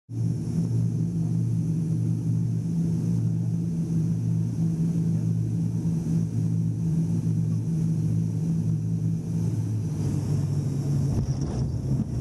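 Turboprop airliner engine and propeller heard from inside the cabin: a steady low drone with a thin high whine over it. About eleven seconds in, the sound roughens as the plane is on the runway.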